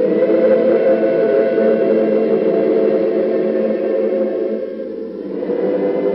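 Background choral music: voices holding one long sustained chord, which dips briefly near the end and swells again.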